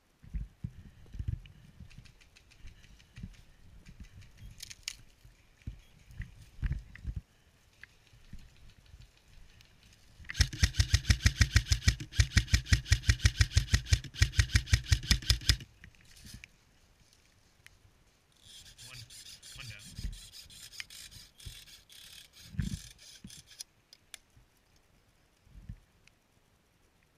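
Airsoft rifle firing a long string of rapid, evenly spaced shots lasting about five seconds, after footsteps crunching through snow. Later comes a fainter, higher stretch of rapid clicking.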